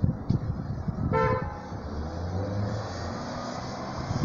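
Road traffic moving off over a level crossing just after a train has passed, with a short single car-horn toot about a second in.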